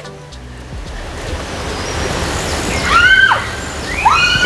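Wind rushing over the microphone, growing steadily louder as the ride picks up speed downhill, with a child's short, high-pitched scream about three seconds in.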